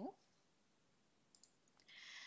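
Near silence, with two faint clicks about a second and a half in, from the computer being used.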